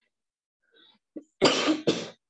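A person coughing twice in quick succession near the end, the second cough shorter.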